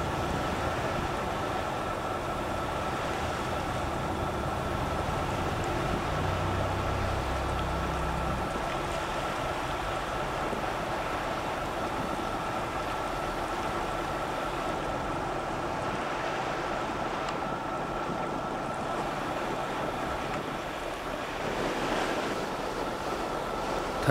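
Wind on the microphone over open sea and waves, an even rushing noise with a faint steady high whine and a brief low hum about six seconds in.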